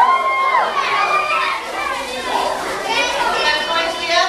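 Several children's voices talking and calling out over one another, loud and overlapping.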